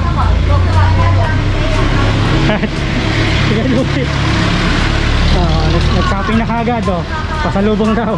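A motor vehicle's engine running close by on a street, a steady low hum that eases off about halfway through, with people talking over it.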